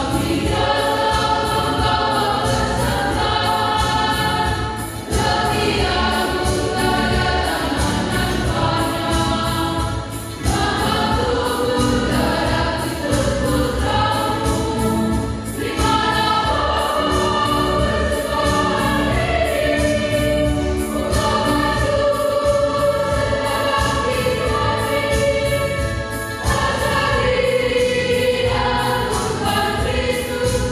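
A church choir singing a hymn in long sustained phrases, with short breaks between phrases about every five seconds.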